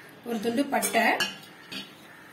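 A cinnamon stick dropped into a stainless steel pan, clinking against the metal a couple of times, with a short spoken phrase over it.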